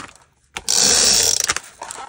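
Adhesive tape runner gun dispensing a strip of dry adhesive. A ratcheting whirr starts about half a second in and lasts about a second, followed by a few light clicks.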